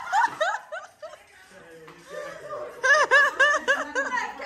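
Women laughing: a run of quick laughs in the first second, a quieter lull, then another burst of laughter near the end.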